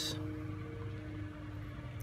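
Steady low background hum with a couple of faint steady tones, one of which drops out a little over a second in.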